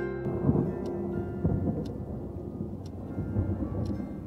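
Thunder rumbling, swelling about half a second in and again about a second and a half in, over faint held music tones.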